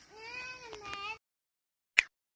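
A single long, wavering call with a clear pitch, rising then falling, that cuts off suddenly about a second in. Silence follows, then a sharp click at the very end.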